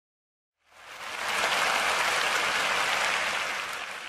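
Audience applause swelling in about a second in, holding steady, then dying down near the end.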